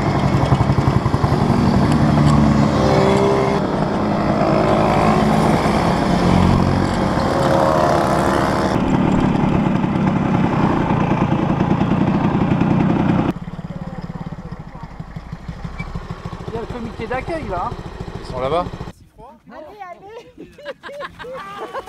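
Engines of a group of mopeds and vintage motorcycles running and pulling away, their pitch rising and falling, in several short cuts. About thirteen seconds in the engine sound drops away to a much quieter stretch with voices.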